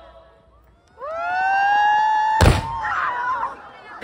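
A voice calling out one long drawn-out note that rises in pitch and then holds, with a sudden loud thump about two and a half seconds in.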